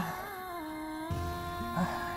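Background music score of sustained synthesizer chords. The held notes slide downward together in the first second, then settle and hold steady.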